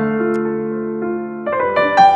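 Background piano music: soft held chords, with new notes coming in about a second and a half in.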